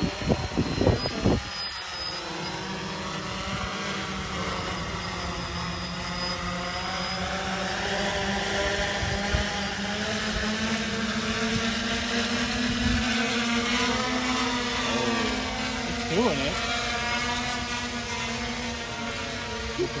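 Multirotor drones hovering at close range: a steady whine of propellers and motors with several pitches beating against each other, which rises a little in pitch midway and settles back.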